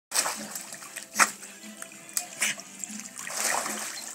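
A small dog paddling through pool water, with a steady slosh and several sharper splashes, the loudest about a second in.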